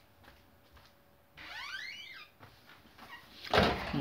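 A brief squeak, under a second long, that rises and falls in pitch about a second and a half in. Near the end comes a short, loud rush of noise just before speech begins.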